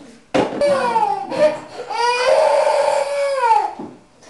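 A baby crying loudly in two wails, the second one long and held before falling away near the end.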